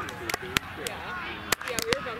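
Indistinct voices of people talking at a distance, with a few sharp clicks scattered through, several close together near the end.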